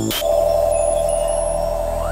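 Electronic glitch transition effect: a sudden crackle of static, then a steady buzzing tone over a low rumble.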